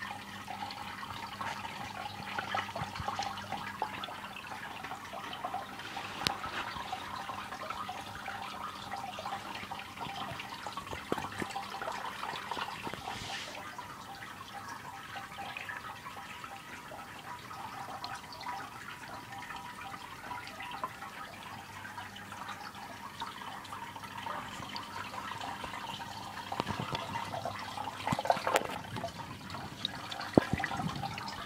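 Water trickling and splashing in a running aquarium, heard steadily with a faint low hum underneath. A few knocks near the end.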